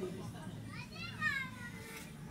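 A child's high-pitched voice: one drawn-out squeal or whine about a second long, bending in pitch, heard a little way off over a faint low hum.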